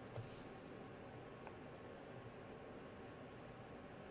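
Near silence: faint room tone with a couple of soft computer-mouse clicks, one just after the start and one about a second and a half in.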